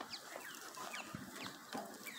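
Birds chirping: many short, quick calls that slide downward in pitch, repeating one after another.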